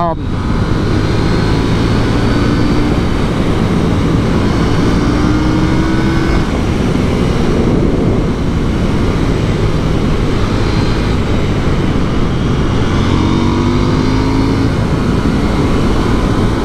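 KTM 890 Duke R's parallel-twin engine pulling hard at highway speed under heavy wind rush on the helmet microphone. The engine note rises twice as the bike accelerates.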